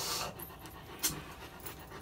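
Rottweiler panting through a basket muzzle, with breaths right at the start and again about a second in.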